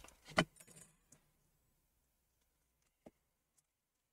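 Quiet handling of a laptop LCD panel with tweezers: a short click just after the start, a few faint ticks, and one sharp click about three seconds in.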